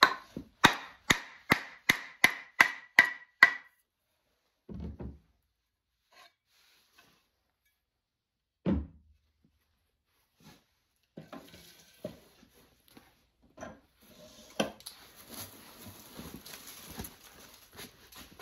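A wooden mallet strikes the end of a wooden axe handle about nine times in quick succession, knocking the steel axe head off; each knock rings. About halfway through there is a single heavier thump, and near the end the bare handle is rubbed and shuffled as it is laid on the wooden shaving horse.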